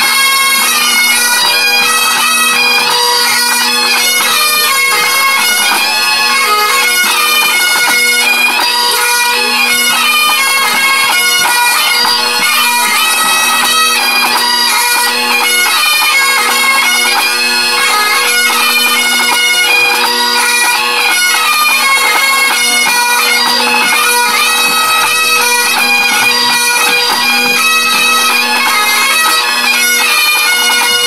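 Pipe band of Great Highland bagpipes playing a tune in unison, the chanter melody moving over a steady, unbroken drone.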